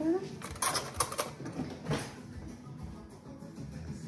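A few quick clicks and light knocks about a second in, from a metal fork being taken out and handled at a kitchen counter.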